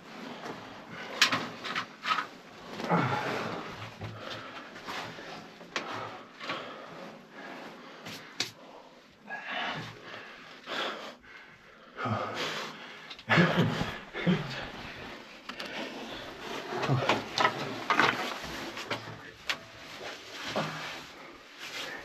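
Irregular knocks, scrapes and shuffles of people clambering down a narrow concrete bunker shaft: shoes and hands on concrete, grit and iron rungs, with scattered sharp clicks, sounding close and boxed-in.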